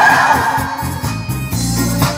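Karaoke backing track playing loudly through the machine's speakers, a steady instrumental with a repeating bass line; a held note fades out in the first half second.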